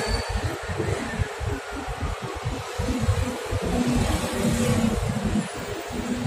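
Low, uneven rumble of wind buffeting the microphone, over a steady hiss of outdoor street background noise.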